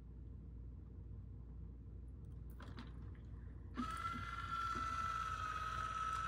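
Quiet, then a YoLink water leak sensor's alarm starts about two-thirds of the way in: a steady, continuous high-pitched electronic tone, set off by water bridging its sensing contacts.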